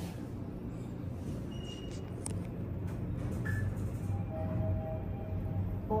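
Mitsubishi traction elevator car travelling between floors: a steady low hum from the moving cab. A faint steady tone sounds briefly about four seconds in.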